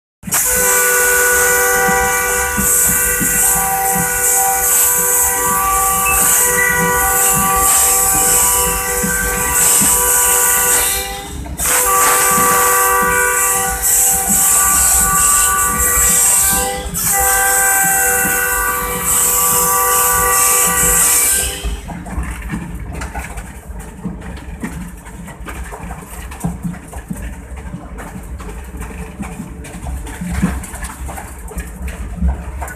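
Air horn of a PHA-20 diesel-electric locomotive, heard from inside its cab, sounded in three long blasts: the first about eleven seconds, then two of about five seconds each in quick succession. Each blast is a chord of several steady notes with an airy hiss. After the horn stops, a couple of seconds past the middle, the locomotive's running and wheels on the rail continue as a steady rumble.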